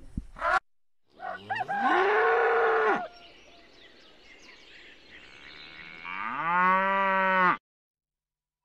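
Cattle mooing: two long moos, each rising in pitch at the start and then held steady, the second one cut off suddenly near the end.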